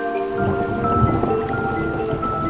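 Steady rain, with a low rumble of thunder coming in about half a second in, under slow relaxation music of long held notes.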